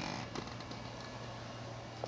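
Low, steady electrical hum with a faint hiss from a running high-voltage circuit built around a neon transformer and an enclosed spark gap.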